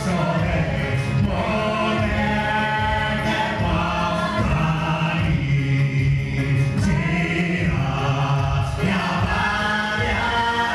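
A hymn sung by a group of voices with no instruments, led by a man singing into a microphone, in long held notes.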